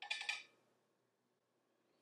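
Near silence: room tone, after a brief soft noise in the first half second.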